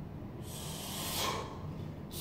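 A lifter's long, forceful exhale during a double kettlebell snatch, a breathy rush that starts about half a second in and lasts over a second.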